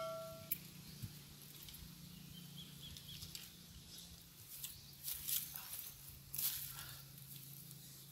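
A bell chime from a subscribe-button animation fades out in the first half second. After it come faint clicks and rustles of hands handling a dowsing rod and its wire, over quiet outdoor background.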